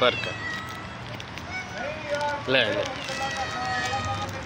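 Several kittens mewing over and over, their thin, high calls overlapping one another.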